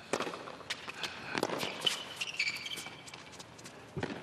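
Tennis ball struck back and forth by racquets in a rally on a hard court: a series of sharp pops spread through the few seconds.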